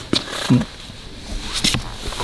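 A couple of light clicks from the brake disc and caliper being handled on a platform scale, one just after the start and one near the end, with a brief hum of a man's voice about half a second in.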